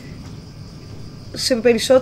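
Crickets chirring steadily in the background, an even high-pitched drone, with a woman's voice starting up again about two-thirds of the way through.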